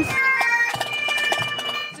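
Pipe band of Highland bagpipes playing a tune, the steady drones held under the chanter melody, with a few bass drum beats. It fades off near the end.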